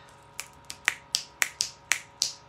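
Fingers snapping in a quick, uneven run of about eight sharp snaps, louder after the first second, as someone tries to recall a name.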